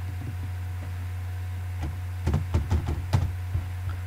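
Computer keyboard keystrokes: a quick run of about half a dozen clicks midway, over a steady low mains hum.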